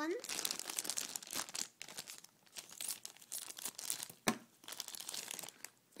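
Crinkly blind-package wrapping being crumpled and torn open by hand, with one sharp click about four seconds in.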